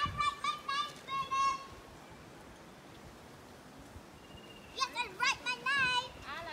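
Children playing outdoors, with high-pitched shouts and squeals in two bursts: one at the start and another near the end, with a quieter stretch between.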